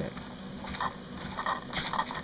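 Mamod SP4 model stationary steam engine's flywheel being pushed round by hand against the steam pressure to start it: a few small clicks and scrapes over a faint steady hiss.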